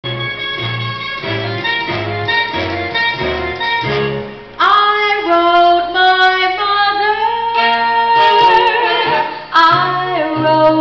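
A woman singing a 1940s-style swing song to instrumental accompaniment. The first four and a half seconds are a rhythmic instrumental intro with a pulsing bass line. The music then gets louder as the vocal melody enters, sung with vibrato.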